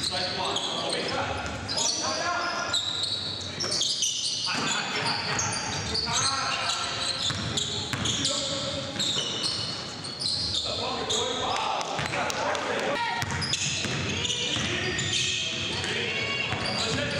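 Voices in a large gym over the thumps of a basketball being dribbled on the hardwood court.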